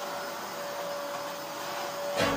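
Red canister vacuum cleaner running steadily, its motor noise carrying a constant whine.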